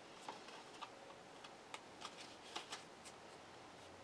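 Tarot cards being drawn from the deck and laid down on a cloth-covered table: a few faint, irregular flicks and taps of card stock.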